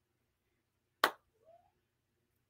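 A single sharp click about a second in, followed by a faint, short rising tone.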